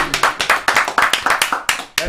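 A small group of people clapping their hands in irregular, overlapping claps that thin out and stop just before the end.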